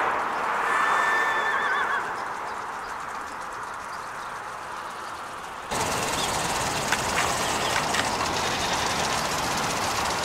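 A horse whinnying once, about a second in: a held note that breaks into a quavering shake. Steady outdoor background noise runs under it and jumps louder at a cut about halfway through, with a couple of faint clicks after it.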